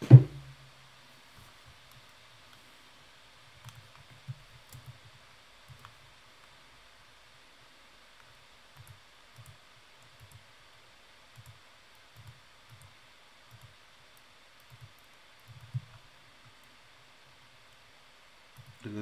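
Computer mouse clicking, soft irregular taps every half second to a second, with one louder knock right at the start.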